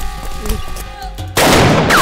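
A single loud pistol gunshot sound effect about one and a half seconds in, sudden and lasting about half a second before dying away.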